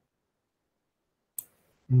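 Dead silence, broken by one short, sharp click about one and a half seconds in, then a man's voice begins near the end.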